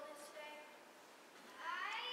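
A young stage actor's voice delivering lines, fairly faint, ending in a high-pitched rising vocal sound that resembles a cat's meow.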